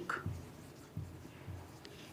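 Marker pen writing on a whiteboard, a few faint separate strokes.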